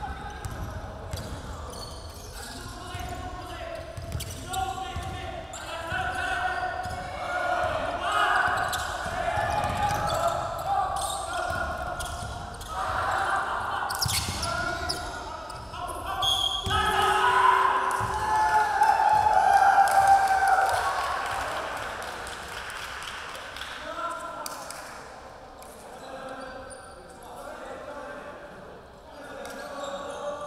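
A basketball dribbled on a hardwood gym floor, with players' voices calling out on the court. The voices are loudest for a few seconds just after a shot at the basket, past the middle, and things quieten toward the end.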